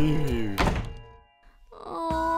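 A cartoon wooden door slams shut with one heavy thunk about half a second in, over falling music notes. The sound then dies away, and near the end a voice starts a held whine.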